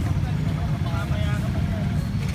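Motorcycle engines idling and creeping in a jam, a steady low rumble, with people's voices chattering faintly over it.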